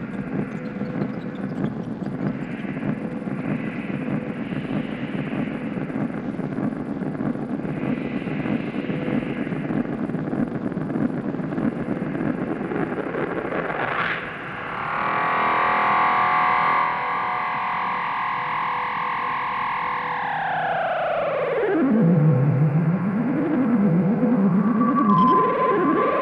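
Analog modular synthesizer music. A dense, noisy texture runs for most of the first half; about 14 seconds in, a quick upward sweep opens into a held chord of several tones. Near the end the chord glides down in pitch into a low tone that wavers up and down.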